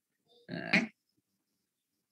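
A brief voiced hesitation sound from the lecturer's voice, under half a second long, about half a second in; silence for the rest.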